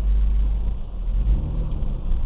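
Low, steady rumble of a car's engine and running gear, heard from inside the cabin as the car creeps forward at walking pace.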